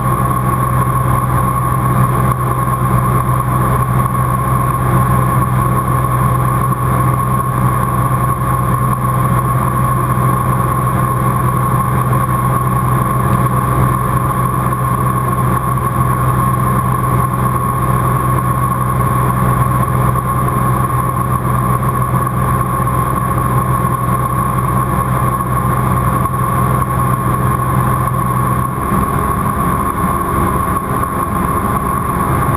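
Cirrus SR20's four-cylinder piston engine and propeller in cruise, heard inside the cabin as a loud, steady drone with a steady higher whine over it. The low tone of the drone shifts about a second before the end.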